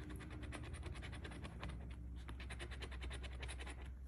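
A coin scratching the latex coating off a paper scratch-off lottery ticket in rapid, even strokes.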